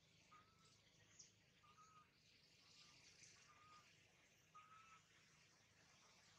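Near silence: faint outdoor ambience with a few faint short high notes, about one a second.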